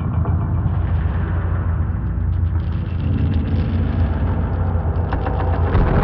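Experimental drone music: a heavy, continuous low rumbling drone with a noisy haze above it, and fine crackling clicks that come in about halfway through and again near the end.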